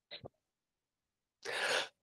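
Video-call audio dropping out to dead silence, the sign of an unstable connection, broken by a short clipped fragment of sound just after the start and a brief breathy burst of noise near the end.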